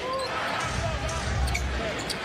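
A basketball being dribbled on a hardwood court, with steady arena crowd noise and faint voices underneath.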